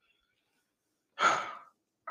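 A single sigh: a breathy exhale about a second in that lasts about half a second and trails off.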